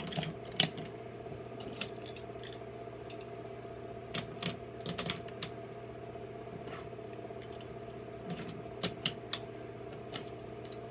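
Wooden toy railway trucks being pushed along wooden track and coupled together by hand: scattered light clicks and clacks of wood on wood, some in quick clusters, over a steady faint hum.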